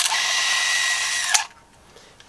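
Pentacon Prakti camera's built-in battery motor whirring steadily for about a second and a half with a thin steady whine, then stopping abruptly. The mechanism runs but the leaf shutter stays stuck closed: a defective camera.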